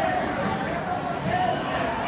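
Voices of spectators and coaches calling out during a wrestling match, with dull thumps underneath.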